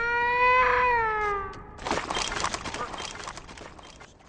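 A large cartoon bird's long call to its chicks: one loud held note that swells and then slides down over about a second and a half. It is followed by a stretch of rustling, crackling noise.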